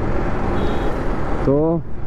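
Steady wind rush and road noise from riding a motorcycle in traffic, heard on a helmet-mounted microphone, with the engine running underneath. A man's voice cuts in with a word near the end.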